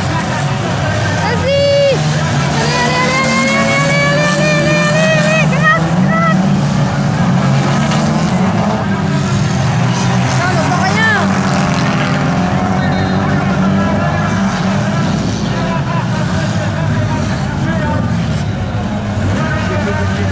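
Engines of several battered stock cars running hard on a dirt track. About two seconds in, one engine revs up steadily for several seconds, and there is another short rev about eleven seconds in.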